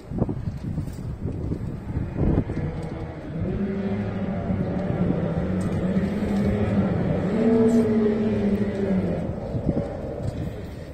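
Kyotei racing hydroplanes' two-stroke outboard motors running across the water in a group. A steady engine drone builds from about three seconds in, rises slightly in pitch, then eases off near the end.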